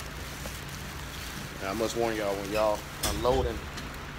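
A voice talking indistinctly in two short stretches, over a steady outdoor hiss of rain and a low steady hum, with one sharp click about three seconds in.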